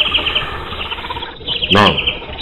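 Insects chirping steadily in fast, evenly pulsed trills, like crickets in a night-time background.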